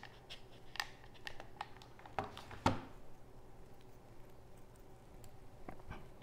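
Faint, scattered clicks and taps of a hot glue gun and a small plastic flight controller board being handled, with a couple of sharper ticks a little over two seconds in.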